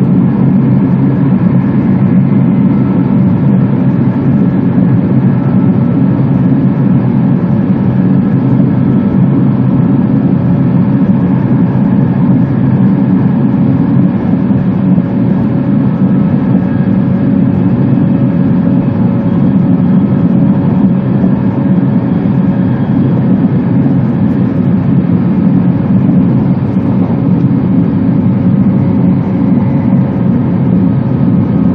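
Steady running noise inside the passenger cabin of an E2 series Shinkansen train on the move at reduced speed: a loud, even low rumble with faint steady whines above it.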